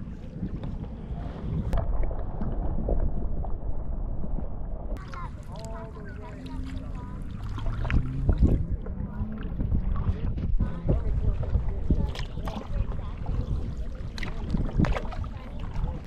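Kayak paddles dipping and splashing in calm water, with drips and knocks against the hulls, over a steady low rumble on the microphone. Faint voices can be heard in the middle.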